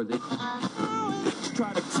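A short radio jingle, music with some singing, marking the break between the weather report and the news headlines.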